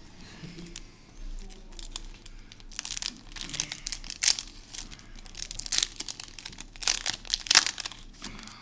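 Foil wrapper of a Yu-Gi-Oh booster pack being torn open and crinkled by hand. The wrapper makes a run of short crinkling rustles that get louder and denser in the second half.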